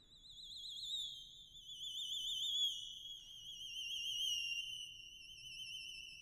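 Theremin playing alone: one very high held note with a wide, fast vibrato that fades in and slides slowly downward in pitch, swelling louder and softer.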